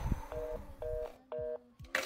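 A low thump, then three short two-tone beeps from a telephone receiver, about half a second apart: a fast busy tone on a dead line.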